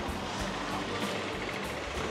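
Background music at a low level over steady street noise.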